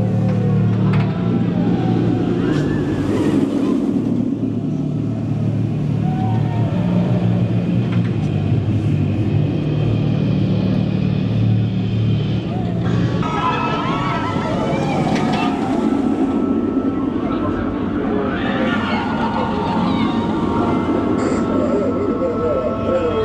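A loud, low, steady drone with indistinct voices over it. The drone stops about thirteen seconds in, and a higher steady tone with more indistinct voices follows.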